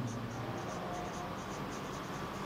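Marker pen writing on a whiteboard: a quick series of short scratchy strokes, several a second.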